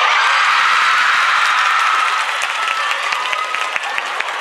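Audience applauding with some cheering, loudest for the first two seconds, then thinning to scattered claps.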